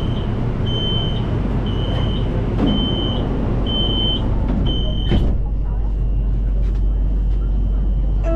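Metro train door warning beeps: six short high-pitched beeps about one a second, ending with a thump as the doors shut about five seconds in. A low, steady rumble of the train and station runs underneath.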